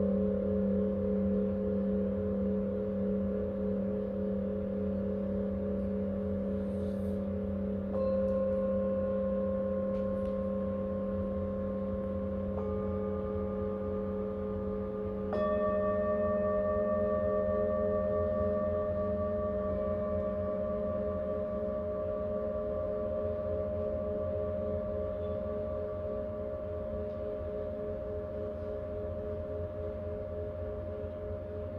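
Tibetan singing bowls ringing in long overlapping tones with a slow wavering beat. Further bowls are struck with a felt mallet three times, at about 8, 13 and 15 seconds in, each adding a new tone over the others as they slowly fade.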